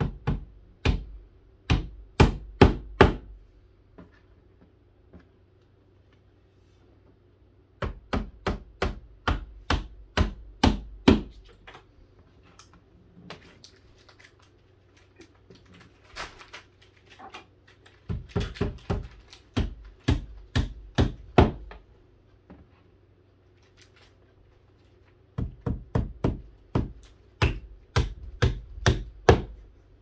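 A hammer pounding nails into the wooden panels of a cubby-hole organizer, in four runs of quick sharp blows at about three a second, with pauses of a few seconds between runs.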